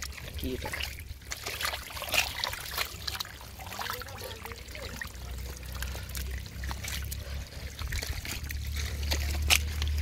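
Hands digging and scooping in soft, waterlogged mud: irregular wet squelches and splats with water trickling, over a steady low rumble.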